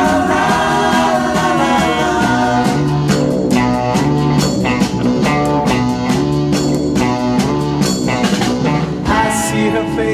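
A late-1960s British pop-rock recording: a band with guitar playing at a steady beat, with some singing.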